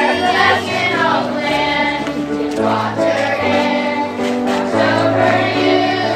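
Music: a choir with children's voices singing a song in held chords, the notes moving every second or so.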